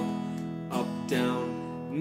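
Steel-string acoustic guitar strummed on an E major chord in a down-down-up-up-down rock strum pattern. Several strokes, the chord ringing on between them.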